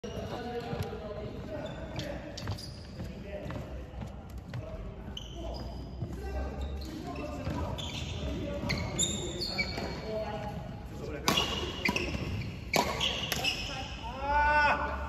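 Badminton hall ambience: sports shoes squeaking on the wooden court floor under a murmur of voices, with a few sharp knocks near the end.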